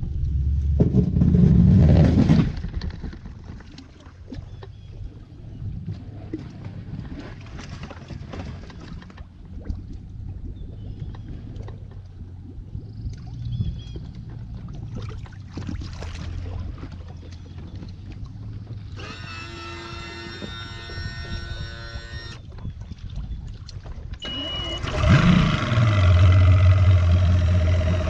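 Pickup truck engine running as it backs a bass boat on its trailer down a rough dirt bank into a pond, with knocks and rattles from the rig. The engine is loud for the first couple of seconds, then settles, and it is loud again for the last few seconds.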